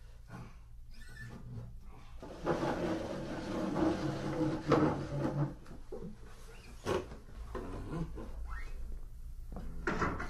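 A slow creak lasting about three seconds, like a door swinging open, then a single sharp knock a couple of seconds later, recorded binaurally with a dummy head in a small room.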